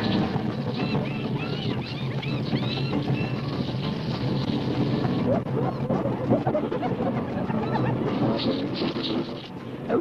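Soundtrack of a wildebeest stampede: a dense, continuous rumble of a herd running, with many short rising-and-falling animal calls over it and music in the mix.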